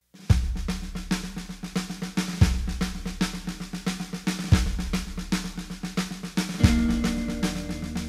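A pop-punk song begins a moment after silence with a full drum kit: fast, even cymbal strokes over a steady bass line, and a heavy bass-drum hit about every two seconds. A held note joins near the end.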